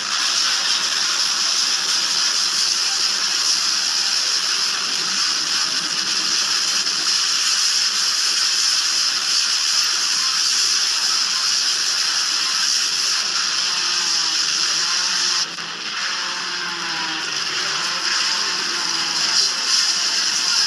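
Loud, steady harsh hiss from heavily distorted, layered edited audio. It dips briefly about fifteen seconds in, and faint wavering tones come through underneath for the next few seconds.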